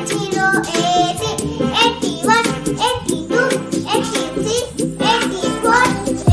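A child singing over a backing music track with a steady beat.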